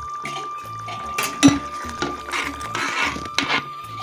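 Metal spoon stirring a simmering curry in a steel pan, clinking against the pan several times, the sharpest clink about one and a half seconds in.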